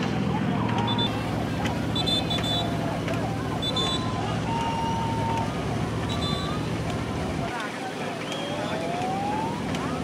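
Nouka baich race boats under way: rowers shouting and calling over churning water, with a short high ringing beat about every second and a quarter. A steady low engine drone runs underneath and cuts off about seven and a half seconds in.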